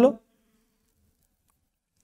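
A man's voice finishing a word, then near silence: room tone.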